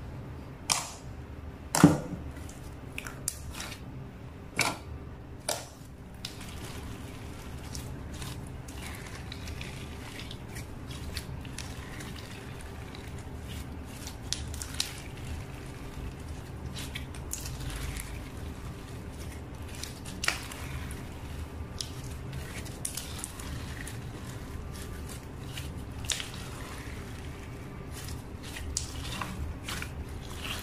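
Clear glitter slime being kneaded, folded and stretched by hand: steady wet squishing and sticky handling, broken by sharp clicks, the loudest about two seconds in, several more in the first six seconds and one about twenty seconds in.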